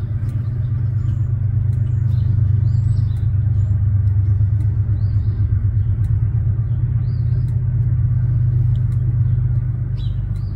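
Steady low rumble that rises a little in loudness early on, with small birds chirping now and then above it.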